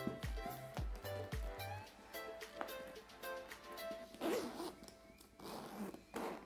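Metal zip of a leather handbag being pulled open, with background music with a beat under it.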